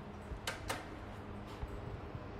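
Two faint sharp clicks about a fifth of a second apart, the elevator's hall call button being pressed, over a faint steady low hum.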